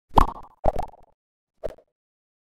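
Three short pop sound effects from an animated intro, the first loudest and the last softest, each with a brief ringing tone.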